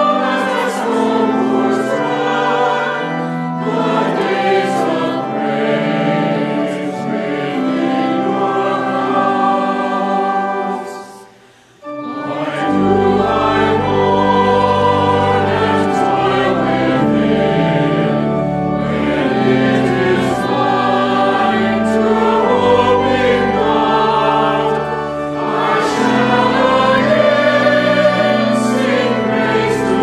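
A church congregation singing a hymn with accompaniment. About eleven seconds in, the singing stops for a moment between verses. The next verse then begins with a deeper bass line added underneath.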